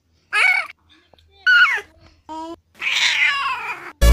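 Four short, high-pitched vocal cries with pauses between them: the first two slide in pitch, the third is brief and steady, and the last is longer and rougher.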